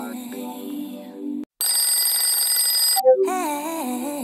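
Background music with a gliding melody that cuts out about one and a half seconds in, replaced by a smartphone alarm ringing loudly for about a second and a half with several steady tones at once. The music comes back near the end.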